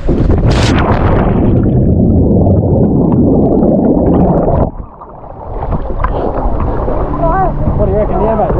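A jump feet-first into lake water with the camera in hand: a splash of entry about half a second in, then a loud muffled underwater rush of bubbles for about four seconds that cuts off suddenly. The camera surfaces to lapping water and wind on the microphone.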